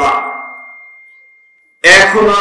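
A man's voice through a public-address system trails off in a long echo that fades over about a second and a half, with a thin, steady, high-pitched ring from the sound system underneath. Speech comes back in abruptly near the end.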